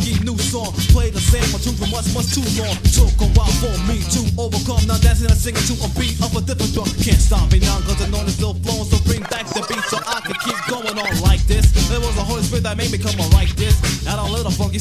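An old-school Christian hip-hop track: rapping over a beat with heavy bass. The bass drops out for about two seconds just past the middle, then comes back.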